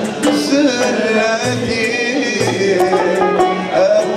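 Live Algerian ensemble music: a male voice singing over bowed violin and plucked lutes, with a frame drum striking a steady beat.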